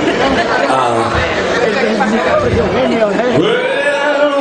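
Several people talking at once, loud chatter of a crowd close by, with one voice drawing out a long sound near the end.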